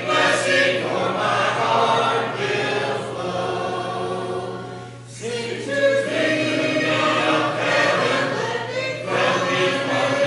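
Congregation singing a hymn a cappella, many voices in parts, with a short break between phrases about five seconds in.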